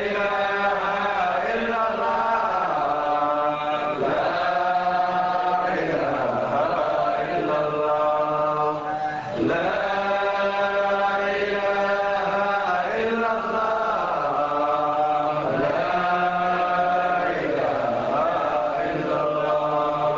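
Arabic Sufi devotional chant (dhikr) by a male voice, sung in long held notes that slide from one pitch to the next every few seconds.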